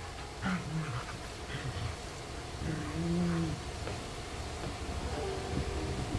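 A Samoyed puppy making short, low-pitched vocal sounds during rough play, with a longer, arching one about three seconds in.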